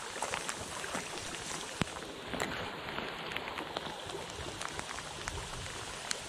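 Steady rain falling on the river surface and the bankside leaves: an even hiss dotted with many small, sharp drop ticks.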